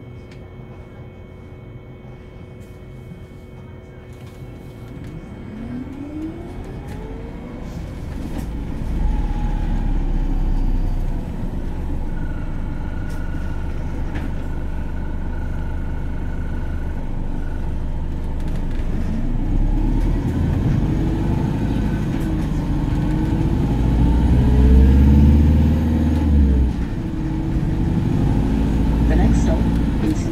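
Inside a Volvo B5LH hybrid double-decker bus on the move: a whine from the drive rises in pitch as the bus pulls away, and a low diesel rumble joins about nine seconds in. Later the whine rises and falls again as the bus speeds up and slows, with the rumble loudest a few seconds before the end.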